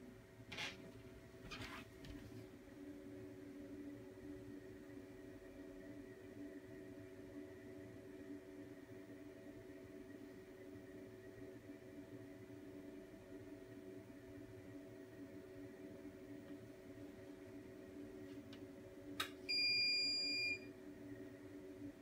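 Faint steady hum, then a single high electronic appliance beep lasting just over a second near the end.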